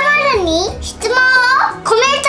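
A high-pitched, child-like voice vocalising in a sing-song way, its pitch swooping down and back up, over background music with steady low notes.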